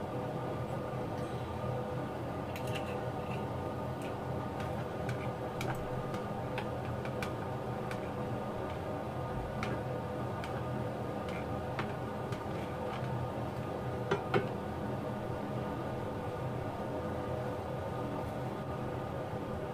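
Butter melting in olive oil in a frying pan on medium heat, giving scattered faint crackles and ticks over a steady hum, with two sharper clicks about fourteen seconds in.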